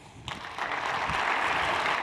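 Audience applauding after a talk: clapping breaks out about a third of a second in and quickly builds to steady applause.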